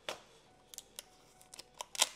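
Clear plastic seal sticker being peeled off a cardboard box: a short tearing rasp at the start, a few faint crackles and ticks, then another sharp rasp right at the end as it pulls free.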